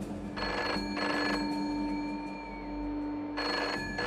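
Telephone ringing in the British double-ring pattern: two short rings close together, a pause of about two seconds, then ringing again near the end. A low steady hum runs underneath.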